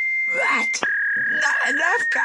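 A steady electronic error tone that drops to a slightly lower pitch just under a second in, over a wavering voice moaning.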